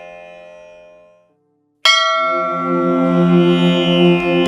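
Devotional music fading away to a moment of silence, then a bell struck once about two seconds in, its bright ringing tones sustaining as a held instrumental drone swells underneath to open the next piece.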